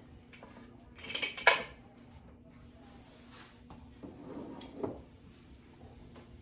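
Knocks and clinks of kitchen items handled on the counter: a wooden rolling pin laid into a wicker basket and a lidded glass canister of dog kibble picked up and set down. The loudest knocks come about a second in, with softer ones around four to five seconds in.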